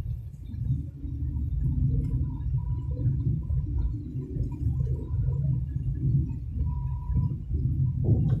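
Steady low rumble of a car's engine and tyres on the road, heard from inside the moving car, with a faint wavering hum above it.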